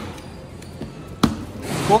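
A cardboard flower shipping box being opened by hand: one dull thud about a second in, then cardboard scraping as a flap is lifted.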